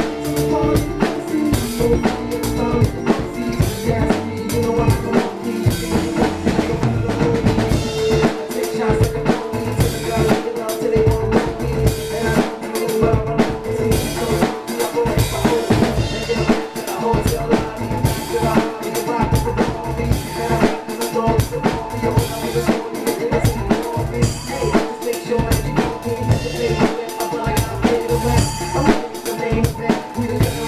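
Acoustic drum kit played in a steady hip-hop groove, with kick, snare and cymbals, along to the song's recorded band track, whose held notes run underneath the beat.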